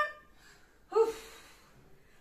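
A single brief high-pitched vocal sound about a second in, like a short exclaimed 'ah', trailing off into faint breathy noise.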